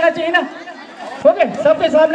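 Speech only: several people talking over one another in a crowd.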